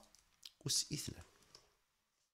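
A short run of quick clicks and taps from a stylus on a writing tablet as a small number is handwritten, bunched in about the middle second.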